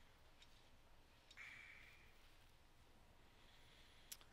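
Near silence: room tone, with a couple of faint clicks in the first second and a brief soft rustle about a second and a half in.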